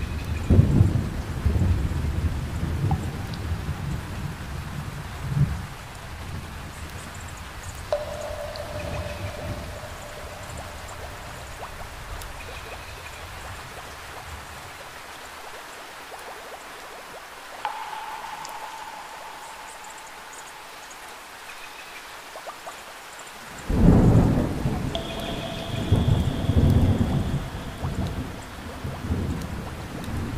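Steady rain with rolls of thunder: a long rumble over the first few seconds and a louder one about 24 seconds in. A few soft held tones sound over the rain.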